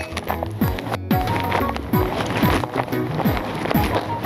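Background music with a steady beat of deep drum hits.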